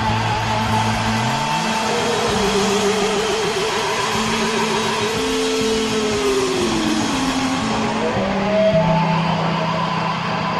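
Live rock band playing: a held lead line with wide vibrato slides slowly down in pitch and then back up, over steady bass notes.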